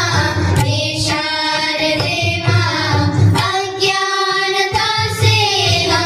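A child's voice singing a melody in long held notes over instrumental music with a steady low beat.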